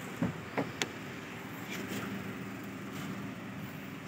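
Perodua Bezza 1.0's three-cylinder engine idling steadily, with a few sharp clicks and knocks in the first second and another near two seconds.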